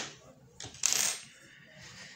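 A short rattling clatter about a second in, from things being handled on a wooden tabletop, with a few light ticks just before it.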